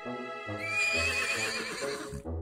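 A horse whinnying, a long wavering neigh starting about half a second in, over light children's background music.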